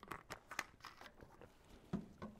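Faint paper rustling with scattered small clicks, as pages and pens are handled while people write.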